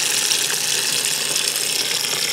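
Water from a garden hose pouring steadily into a plastic bucket packed with comfrey leaves, filling it to make comfrey fertilizer.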